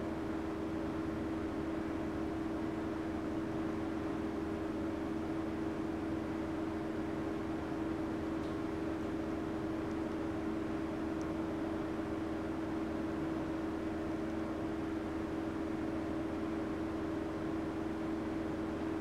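Steady, unchanging mechanical hum with a strong low tone over a soft hiss.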